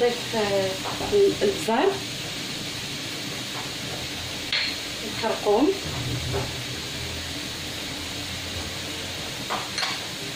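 Chopped onion, peppers and grated carrot sizzling steadily in oil in a nonstick frying pan, stirred with a wooden spoon, with a single clack a little before the middle.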